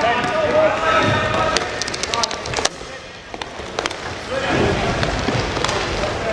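Inline hockey play in an echoing indoor rink: indistinct shouting voices and a quick run of sharp clacks from sticks and puck a couple of seconds in, then a brief lull before the voices pick up again.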